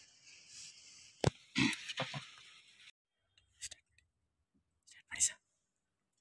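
Quiet room with scattered faint handling noises: one sharp click a little over a second in, then a few short soft knocks and rustles, with brief faint sounds later on.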